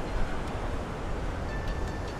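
Steady wind noise buffeting the microphone, an even low rumble with no distinct events.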